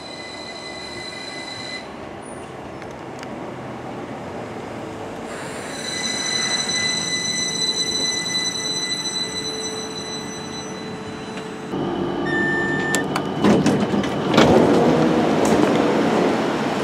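Northern Class 333 electric train pulling into the platform, its brakes giving a high, steady squeal for several seconds as it slows to a stop. Near the end a short beep sounds and the noise grows louder as the doors open.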